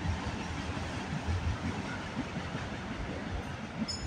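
Freight train of empty auto rack cars rolling past: a steady low rumble of wheels on rail.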